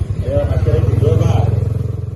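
A motorcycle engine running steadily at low speed, a low rumble with a rapid pulse, under a man's voice calling out.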